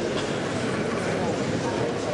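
Steady hubbub of many people talking at once in a large chamber, with no single voice standing out.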